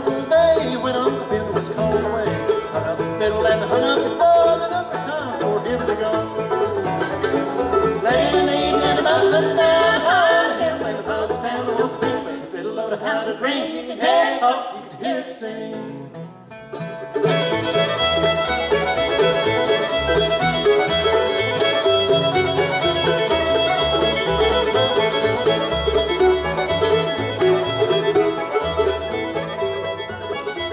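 Live acoustic bluegrass band playing: fiddle, mandolin, banjo, acoustic guitar and upright bass. The playing thins out briefly just past halfway, then the full band comes back in.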